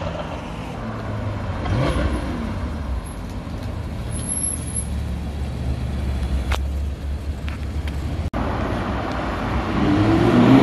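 Car engines passing along a street, a steady low drone with one car's engine pitch briefly rising about two seconds in. After an abrupt cut near the end, a sports car's engine starts to rev up.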